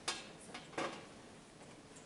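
Two loud, sharp clatters with a fainter one between them, all within the first second, then quiet room noise.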